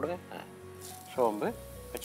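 Fennel seeds dropped into hot oil in a nonstick kadai, sizzling from about a second in.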